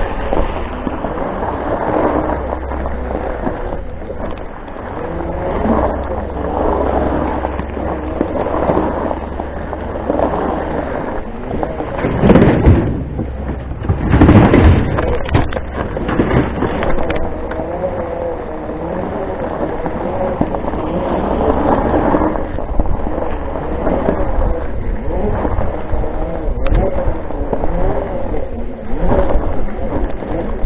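Segway personal transporter's electric drive motors and gearbox whining, the pitch wavering up and down as speed changes, over a steady low wind rumble on the microphone. There are two louder noisy surges about twelve and fourteen seconds in.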